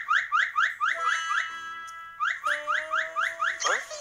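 Electronic warbling sound effect: rapid rising chirps, about six a second, in an alarm-like pattern. A short held tone comes in the middle, and the chirps then resume until near the end.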